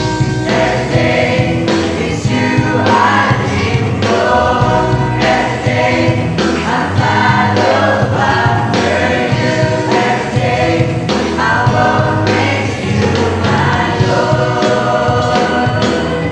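Mixed youth choir of young men and women singing a gospel song through microphones, over amplified instrumental accompaniment with a steady beat.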